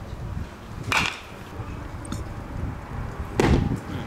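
A baseball bat striking a pitched ball: a sharp crack about a second in. A louder, longer thud follows about three and a half seconds in.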